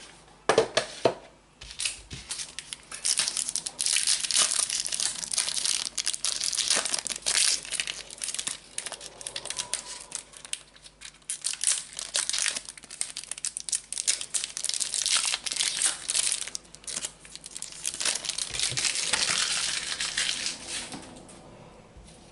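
Foil trading-card booster-pack wrappers crinkling and tearing as packets are handled and opened, with a couple of sharp knocks in the first second.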